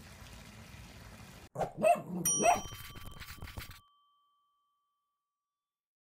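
Faint outdoor ambience, then a short outro sound effect: a few cartoon-style dog barks with a bright bell ding among them, cutting off abruptly into silence.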